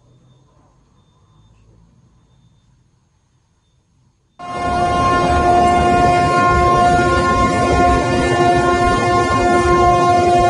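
Cruise ship's horn sounding one loud, continuous warning blast as the ship bears down on the quay, starting suddenly about four seconds in after faint hiss; a chord of several steady tones held without a break.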